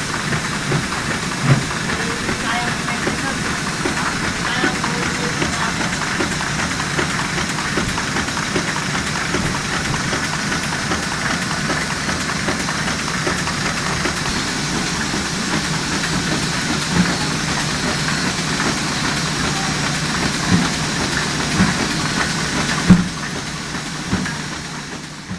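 Web printing press running: a loud, steady machine noise of rollers and paper web in motion, broken by a few sharp knocks.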